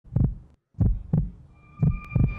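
Heartbeat sound effect: deep, low thumps coming in lub-dub pairs about once a second. A faint high steady tone comes in near the end as the opening of a dramatic music bed.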